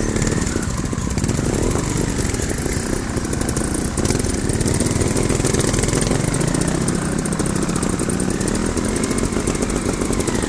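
Trial motorcycle engines running at low, steady revs, the nearest one close to the microphone, with other bikes running just ahead.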